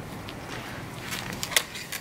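Long-handled loppers cutting into conifer hedge branches: a run of sharp snips and foliage rustling in the second half, the loudest snip about a second and a half in.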